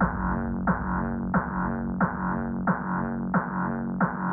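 Hardstyle dance music muffled by a low-pass filter, with everything above the midrange cut away. A pitched kick drum whose pitch drops strikes about every two-thirds of a second over a sustained bass chord.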